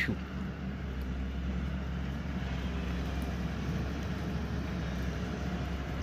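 Hyundai wheeled excavator's diesel engine running steadily under load as it works, an even low drone.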